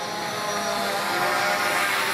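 Steady engine or motor noise that grows slightly louder over the two seconds.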